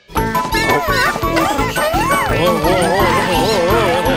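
Upbeat cartoon music with a steady beat, starting after a brief gap, with the high, squeaky, wordless voices of the cartoon bunnies warbling and chirping over it.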